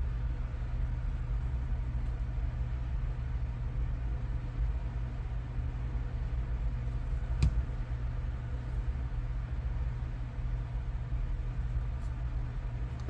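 A steady low hum, with a single short click about seven and a half seconds in.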